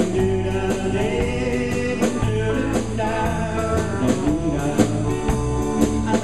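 Live band playing: electric guitars, bass and a drum kit with a steady cymbal beat, with a man singing over them.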